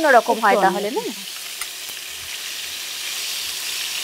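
Cauliflower florets frying in hot oil in a nonstick kadai, a steady sizzle, turned now and then with a spatula.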